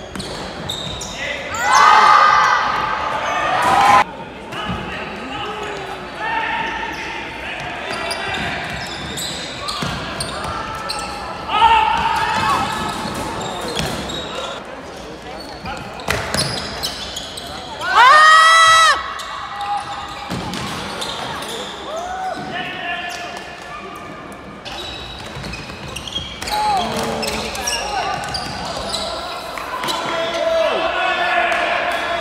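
Players shouting calls to each other in a large, echoing sports hall, over footsteps on the hardwood court. Loud shouts come about two seconds in and again near the middle, and a sharp rising squeak comes about two-thirds of the way through.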